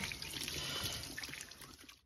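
Tap water running in a thin stream and splashing over soapy hands as they are rinsed, growing fainter toward the end.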